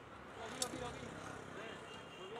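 Faint background chatter of voices in open-air ambience, with one sharp click a little over half a second in.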